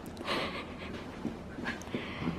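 Two small dogs play-wrestling on carpet, making breathy dog sounds, with one louder, breathy burst about a third of a second in.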